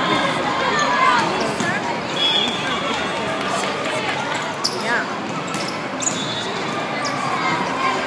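Echoing hall ambience of a volleyball match: many voices talking and calling out, with a few sharp slaps of the volleyball being played around the middle.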